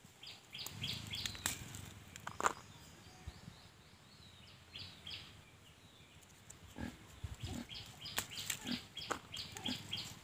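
A piglet grunting, with rustling leaves and small snaps as bird's eye chillies are picked by hand. The loudest sound is a sharp click about two and a half seconds in, and short high chirps repeat throughout.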